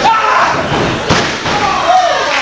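Heavy thuds on a wrestling ring, one at the start and another about a second in, with voices shouting over them.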